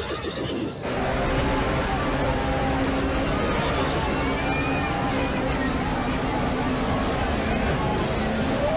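Horses whinnying amid the noisy commotion and voices of a crowd, a dense film-soundtrack mix that suddenly gets louder a little under a second in.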